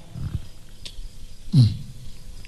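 A man's short, low 'mhm' grunt into a microphone, falling in pitch, about one and a half seconds in, over low background noise.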